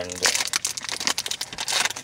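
Plastic wrapper of a meat snack bar crinkling and crackling as it is torn open and handled, a quick run of rustles.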